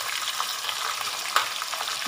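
Crab pieces frying in hot oil with tomato and onion in a wide pot, with a steady sizzle and one sharp click just after halfway.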